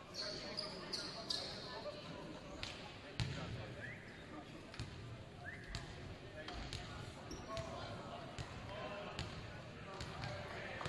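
Volleyballs bouncing on a hardwood gym floor, with short sneaker squeaks and players' voices chattering in the background.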